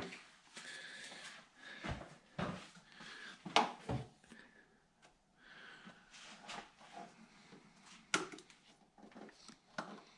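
Faint, scattered clicks and knocks of hands handling a plastic oil jug, a plastic funnel and the engine's oil filler cap under an open hood, with the sharpest knocks about three and a half and eight seconds in.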